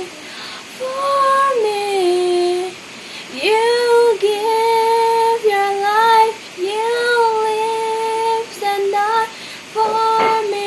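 A girl singing a worship song solo and unaccompanied, holding long notes in phrases with short breaths between them.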